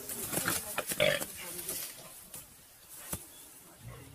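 A wild pig squeals, with the loudest cry about a second in, as a leopard attacks it. Sharp clicks come here and there, one of them clearly about three seconds in.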